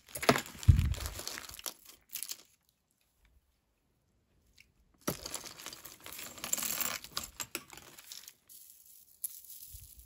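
Hands rummaging through a pile of costume jewelry on plastic bags: plastic crinkling with small clinks of chains and beads, in two bursts, the first starting with a dull thump about a second in.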